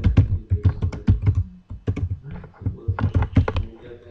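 Typing on a computer keyboard: quick runs of keystroke clicks with a short pause about halfway through.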